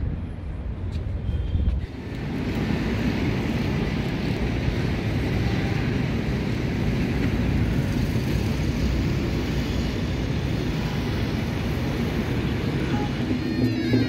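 Steady outdoor city background noise with a hum of traffic. It becomes louder and fuller about two seconds in.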